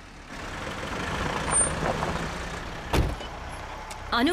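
A motor vehicle drawing near, its engine and road noise swelling and then easing off, with one sharp knock about three seconds in.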